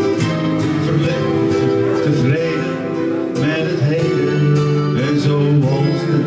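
Acoustic guitar strummed steadily together with an electric guitar playing a melodic line, an instrumental passage of a live song.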